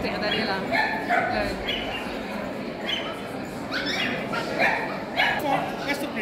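Small dogs yipping and barking again and again in short high-pitched calls, over a steady murmur of voices in a large hall.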